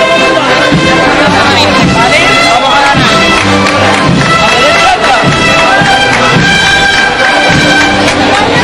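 Brass band playing a processional march, loud and steady with held brass notes, with crowd voices underneath.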